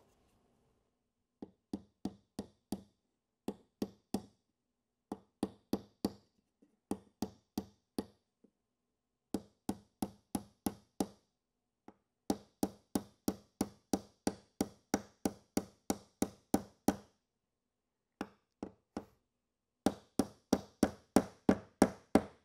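Hammer lightly tapping a small nail at an angle through the end bar into the top bar of a wooden Langstroth beehive frame. The taps come in quick runs of about three to four a second, with short pauses between runs.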